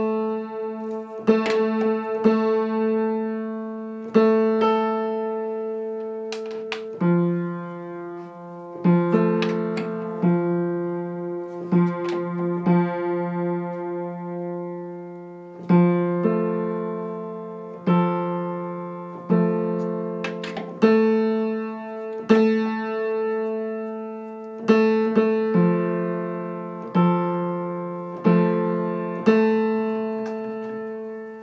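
Piano A3 and A4 strings struck over and over, singly and together as an octave, each note left to ring and die away, as the octave is tuned by double string unison (one string of the trichord muted). Lower notes join in for a while in the middle, and around then one held note wavers with slow beats.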